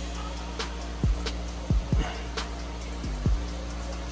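Background music with a beat: deep bass drum hits that drop in pitch, over a steady bass line and sharp hi-hat ticks.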